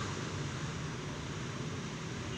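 Steady background hum and hiss of room noise, with no distinct sounds.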